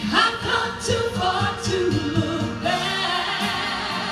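Gospel song: a woman singing into a microphone over instrumental accompaniment, with choir-like backing voices.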